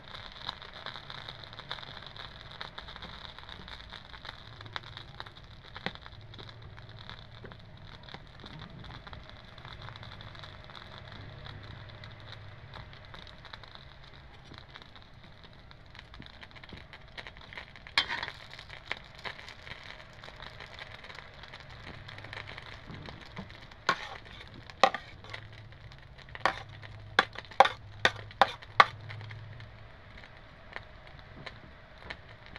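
Food frying in a metal pan with a steady, faint crackle. A metal utensil clacks against the pan once about two-thirds of the way in, then knocks sharply about half a dozen times near the end as ground pork is spread over the pizza.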